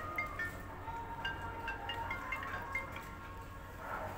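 A run of short, high chiming notes at changing pitches, over a low steady hum.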